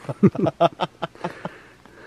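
A man laughing: a quick run of short "ha" bursts, about five a second, that dies away after about a second and a half.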